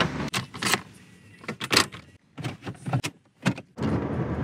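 Getting into a car: a string of separate clicks and knocks from the car door and its fittings, with a couple of brief silent breaks.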